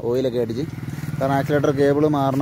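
A man talking over a Bajaj Dominar 400's single-cylinder engine idling steadily, its even low hum plainest in a short pause in his speech.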